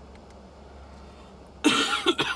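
A man coughs loudly once near the end, over a low steady hum.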